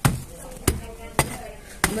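A metal pipe striking hardened chunks of red dirt on a concrete floor to crush them, four sharp knocks about half a second apart.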